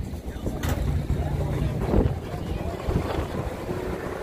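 Wind buffeting the microphone as a low rumble, over a murmur of people talking, with a brief louder bump about two seconds in.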